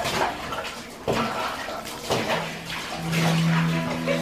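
Water splashing in bursts about once a second, with low held music tones coming in a little over two seconds in.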